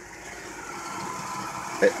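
1962 Chevrolet Impala's engine idling, a steady running noise that grows louder as the microphone nears the front grille.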